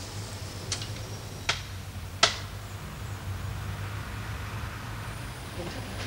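Three knocks on a front door with its small metal door knocker, about three-quarters of a second apart, each louder than the last.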